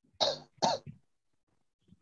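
Two short coughs in quick succession, heard over a video-call connection.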